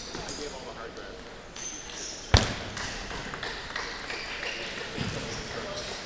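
Table tennis ball being struck and bouncing during a short point, a few light clicks with one sharp crack about two seconds in, the loudest sound.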